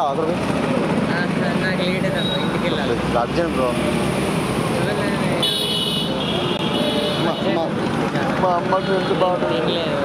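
Busy street traffic with engines running steadily, and a vehicle horn sounding for about a second about halfway through, over men's voices.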